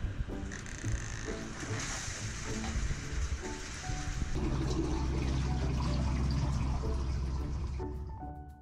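Water rushing from a large hose into a stainless-steel fish-hauling tank as it is filled, under background music. The music's bass grows louder after about four seconds and becomes the loudest sound.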